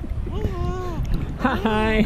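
Short wordless vocal sounds that glide up and down in pitch, the second ending in a held note, over a constant rumble of water and wind buffeting a microphone held just at the water surface.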